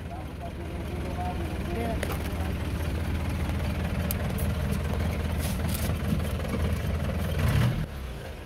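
Engine and road rumble of a commando jeep on the move, heard from its open rear; the rumble grows a little louder after about a second and stays steady.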